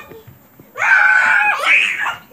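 A child's high-pitched excited scream, starting about three-quarters of a second in and held for under a second, followed at once by a shorter rising shriek.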